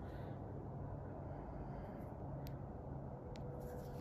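Faint steady low background hum, with two faint sharp clicks in the second half.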